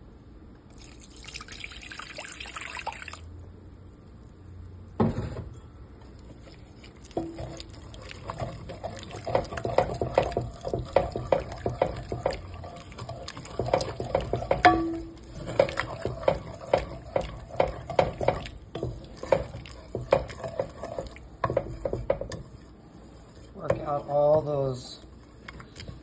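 Hot milk poured into a pot of flour roux, then a wooden spoon stirring and scraping against the pot in a long run of quick strokes, several a second, to work the flour lumps out of the milk. A short knock comes about five seconds in, and a voice near the end.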